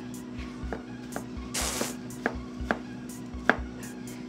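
A Chinese cleaver chopping vegetables on a board in slow, uneven strokes, about five or six knocks with the loudest near the end, typical of a beginner's first cuts. A brief hiss comes near the middle, over a steady low kitchen hum.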